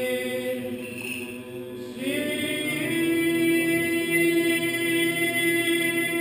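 Unaccompanied Greek Orthodox liturgical singing at vespers, in long held notes that ring in the church. About two seconds in, a louder phrase begins, and a single note is then sustained through to the end.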